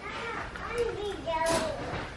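Indistinct high-pitched voices talking, with a sharp click about one and a half seconds in.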